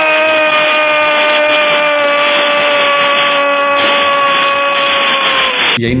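A Brazilian football commentator's long held shout of "Gol" on a single sustained note that sags slightly in pitch for nearly six seconds, over a stadium crowd roar, in thin, old broadcast audio. It cuts off sharply near the end.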